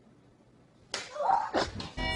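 A sudden sharp smack about a second in, followed by a short vocal cry and another crack.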